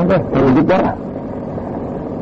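A man's voice speaking for about the first second, then a pause filled with steady low background noise.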